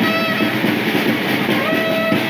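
Conch shell (shankha) blown in long held notes, twice, over background music with guitar and drums.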